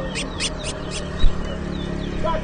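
Caged towa-towa (chestnut-bellied seed finch) singing: a quick run of about four sharp, high chirped notes in the first second, then a few short down-slurred whistles.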